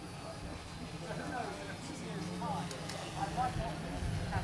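Low, steady propeller hum of a DJI Inspire 1 quadcopter drone in flight, growing slightly louder as it flies over. Faint distant voices of people talking underneath.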